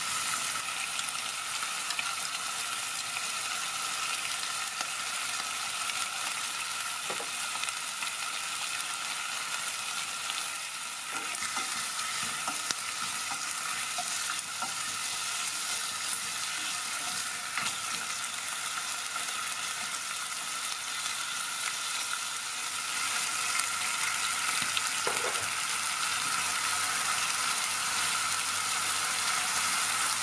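Chicken wings and drumsticks sizzling steadily as they fry in a nonstick pot, with a few taps and scrapes of a spatula turning them.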